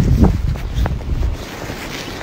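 Wind buffeting the phone's microphone, loud at first and easing off about halfway through, with a couple of footsteps in snow.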